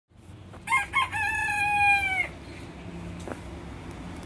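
A bantam (garnizé) rooster crowing once: two short notes, then a long held note that drops in pitch as it ends.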